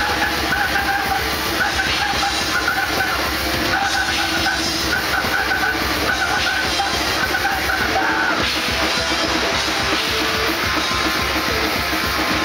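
Grindcore band playing live: a drum kit and a distorted electric guitar, loud and dense, with the riff changing about eight seconds in.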